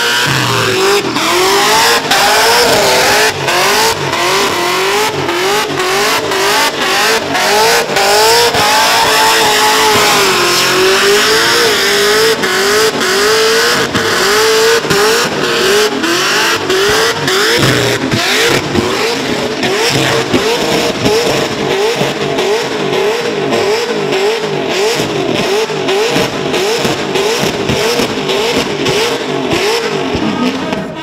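Supercharged, built LS1 V8 in a burnout truck, held at high revs with the throttle worked up and down in quick surges about once a second while the rear tyres spin and smoke.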